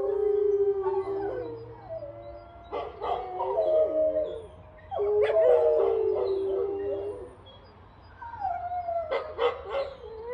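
Several canines howling together in overlapping long, wavering howls at different pitches, coming in waves. A few short yips follow near the end.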